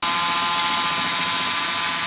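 Electric hand mixer running steadily, its twin beaters whisking pancake batter in a bowl: a loud, even motor whine.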